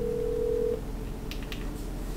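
Outgoing call ringing on a smartphone's speakerphone: the steady ringback tone, one long ring that stops about three-quarters of a second in, leaving faint line hiss while the call waits to be answered.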